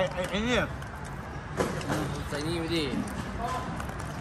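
Men chatting in Thai over a steady hum of street traffic, with one short knock about one and a half seconds in.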